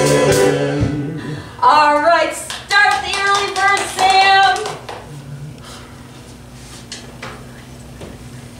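Stage-musical song accompaniment dying away about a second in. A voice then sings several short phrases with sliding pitch, with a few sharp taps, before a few seconds of quiet room sound.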